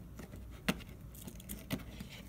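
Small sharp clicks and taps as a replacement display is pressed and fitted onto an iPhone 5s frame by hand, the loudest click about two-thirds of a second in and another near the end.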